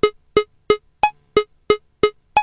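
A metronome app ticking at a steady tempo, about three short, pitched electronic clicks a second.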